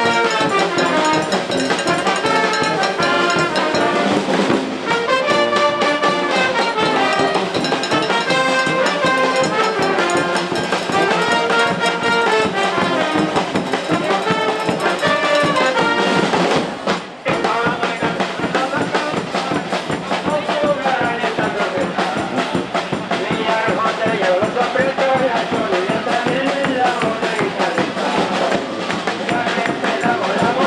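A street brass band plays a tune: trumpets, trombones, saxophones and sousaphone over bass drum and snare drums. The music breaks off briefly about seventeen seconds in, then carries on.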